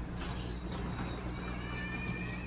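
Low steady hum under a faint hiss, with a few faint clicks and rustles and a thin high tone near the end.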